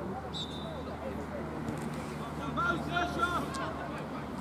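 Distant shouts and calls from footballers and touchline spectators across an outdoor pitch, with a brief high whistle tone near the start and a low steady hum underneath.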